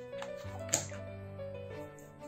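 Soft background music with held notes. A light click about three-quarters of a second in, and a couple of fainter ones, come from leather wallet pieces being handled.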